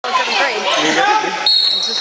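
Overlapping shouts and chatter from spectators and players echo in a gymnasium during a youth basketball game. About one and a half seconds in, a steady, shrill high tone starts suddenly and holds for about half a second: a referee's whistle.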